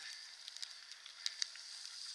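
Bicycle tyres rolling over a dirt forest path: a steady crackling hiss with a few light ticks.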